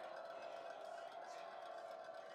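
Faint, steady stadium ambience on a live football broadcast feed, with a thin steady hum underneath.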